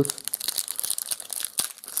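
Foil-lined trading card pack wrapper crinkling as it is torn open by hand: a rapid, irregular run of sharp crackles.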